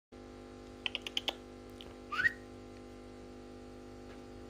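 A quick run of about five sharp clicks, then a short rising whistle about two seconds in, a recall whistle calling a barn owl to the glove, over a steady electrical hum.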